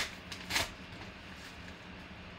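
A padded paper mailer torn open by hand: a short sharp rip at the start and a louder one about half a second in, then faint rustling of paper.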